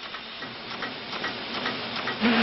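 Plastic bag-making machine running in a factory: a steady mechanical noise with light, repeated ticking.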